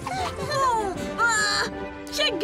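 Cartoon characters laughing in short bursts over light background music.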